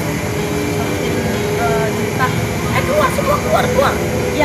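A woman talking from about one and a half seconds in, over a steady low background rumble of engine noise.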